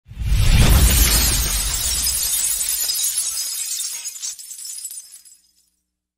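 Glass-shattering sound effect from an animated logo intro: a sudden burst of breaking glass with a deep boom about a quarter second in, then the shards tinkling and fading out, gone by about five and a half seconds.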